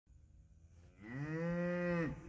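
A cow mooing: one long call starting about a second in, rising in pitch and then held steady.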